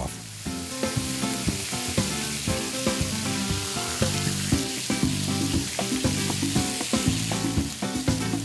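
Pineapple slices frying with rum in a pan, a steady sizzling hiss, with background music playing underneath.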